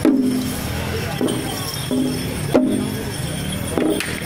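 Procession drum struck in a slow, uneven beat, about five hits, each with a short ringing tone, over light metallic jingling.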